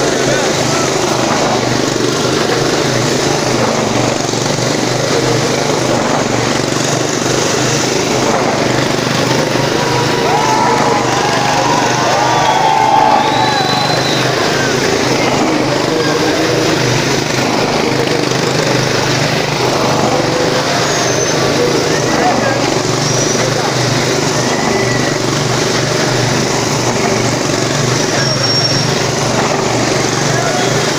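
Motorcycle engine running steadily at high revs as it circles the wall of a wall-of-death drum.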